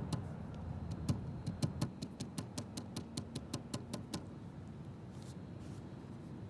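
Fishing reel clicking in a quick, even run of about five clicks a second, stopping about four seconds in, over a low steady hum.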